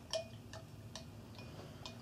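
A few faint, light plastic clicks and taps, spread out: a paintbrush stirring coloured vinegar in a clear plastic cup, and small plastic food-colouring bottles being handled.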